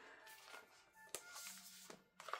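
Near silence, with faint background music and a single soft click about a second in as a cardboard album digipack is opened.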